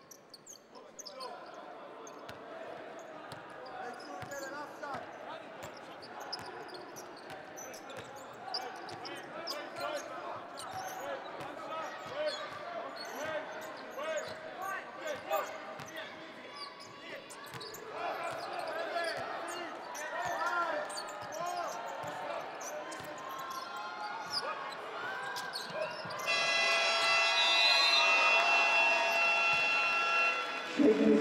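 Basketball dribbled on a hardwood court, with sneakers squeaking and a murmuring arena crowd. About four seconds before the end a loud, steady electronic horn sounds: the buzzer ending the quarter.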